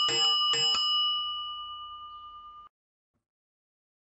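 A bicycle bell rung in quick strokes, its tone ringing on and fading, then cut off suddenly under three seconds in.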